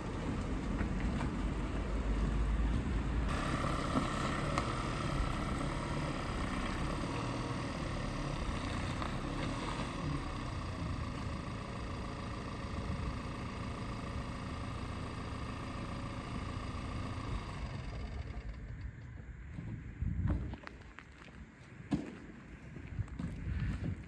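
Ford Transit box van's diesel engine running as the van drives slowly and pulls up. The engine stops about 18 seconds in, and a few short knocks follow in the quiet.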